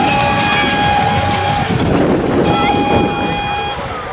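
Vehicle horn sounding two long, steady, single-pitch blasts: the first lasts about a second and a half, the second about a second, starting a little after halfway. Engines and voices run underneath.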